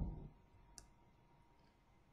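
Near silence broken by a single short, faint click under a second in: a computer mouse click advancing the presentation slide.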